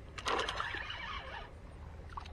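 Spinning fishing reel's mechanism whirring with quick clicks, fading after about a second and a half.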